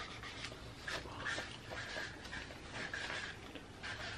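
Dry-erase marker writing on paper: short, irregular strokes with a faint squeak.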